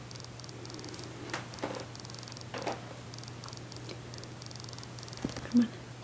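A steady low electrical hum under faint hiss, with a few soft faint clicks.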